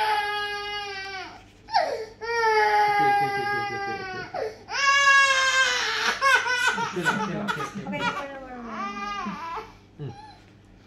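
A toddler crying hard while getting an injection in the arm. It starts with long, high wails of a second or two each, then breaks into shorter sobbing cries in the last few seconds.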